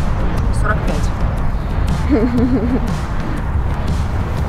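Wind buffeting the microphone, a low, uneven rumble, under a short spoken answer about two seconds in.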